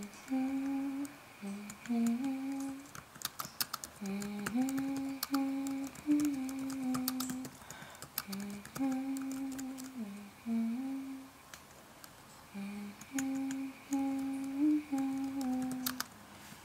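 A person humming a slow, wordless melody in short held phrases with brief pauses between them, with scattered light clicks.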